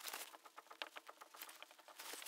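Faint, rapid scratching and squeaking of a felt-tip marker writing on a whiteboard, many short strokes in quick succession.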